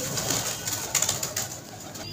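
A flock of white domestic pigeons moving about on the ground, with a string of short flutters and ticks as birds shift and take off.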